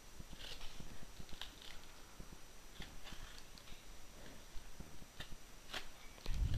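Knife blade cutting along the packing-tape seam of a cardboard box: faint, irregular scratches and ticks.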